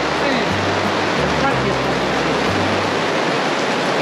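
Rain falling steadily, a dense even hiss. Low held notes of background music step up and down underneath.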